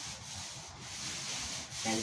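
Paint roller rolling wet paint over a wall, a steady soft rubbing.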